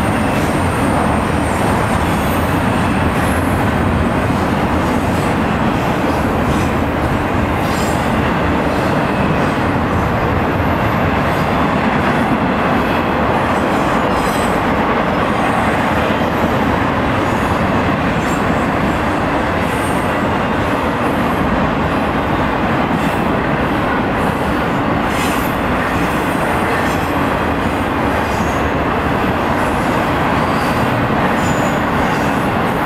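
A train rolling through a grade crossing: a loud, steady rumble of wheels on rail that holds without a break, with scattered clicks.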